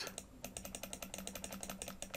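Computer mouse button clicked rapidly over and over, a faint, even run of small clicks at roughly ten a second starting about half a second in, stepping the font size up one point at a time.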